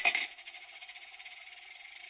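Coins clattering and clinking as an intro sound effect, the last clinks about a quarter second in, dying away into a faint high-pitched tail.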